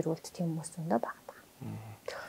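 Speech only: a woman talking in a soft voice, then a short, lower-pitched man's voice near the end.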